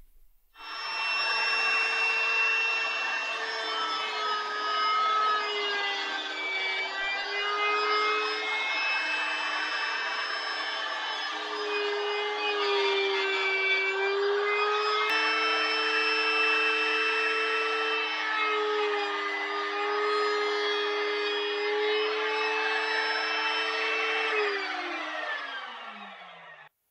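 Router mounted under a router table, running with a steady whine. Its pitch dips each time the bit bites into a plywood piece fed along the fence. Near the end it is switched off and winds down, its pitch falling.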